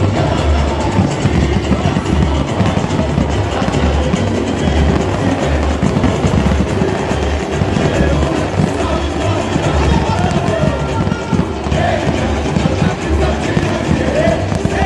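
Live samba-enredo played over the parade's sound system: a samba school bateria with a steady pulse of deep surdo bass drums under a sung samba, with crowd noise.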